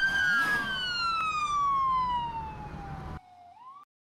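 Emergency vehicle siren wailing, its pitch falling slowly over about three seconds before it is cut off suddenly. A faint rise in pitch follows near the end.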